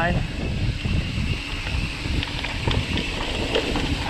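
Haibike electric mountain bike rolling fast downhill on a dirt forest trail: a steady rumble of knobbly tyres on the dirt, wind buffeting the camera microphone, and irregular clicks and rattles from the bike going over bumps.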